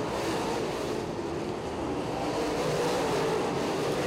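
V8 engines of DIRTcar UMP modified race cars running at speed on a dirt oval, a steady drone with a gently wavering pitch.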